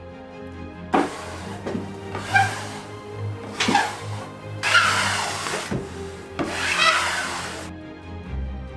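Plastic spreader scraping across fiberglass cloth laid on a curved wooden trailer roof: several long scraping strokes with short pauses between them, over background music.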